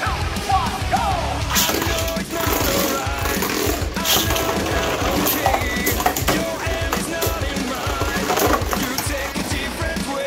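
Beyblade Burst spinning tops whirring and clacking against each other and the walls of a plastic stadium, with many sharp knocks of collisions. Background music plays over it.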